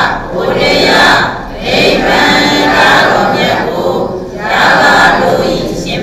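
Many voices chanting together in unison, a Buddhist recitation, in long drawn-out phrases broken by short pauses for breath.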